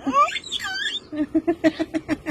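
Baby girl squealing in high sounds that swoop up and down, then a quick run of short, strained grunting sounds, about five a second, as she strains to crawl on her tummy.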